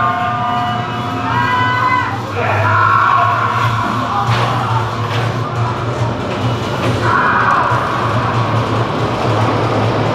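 Music playing over the steady hum of a B&M dive coaster train rolling through the station on its drive tires. The train sound grows broader and louder about seven seconds in.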